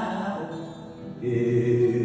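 A man singing long, drawn-out notes to his own acoustic guitar. The sound dips about halfway through, then a new held note begins.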